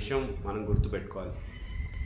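A man speaking for about the first second, then a short pause in his speech.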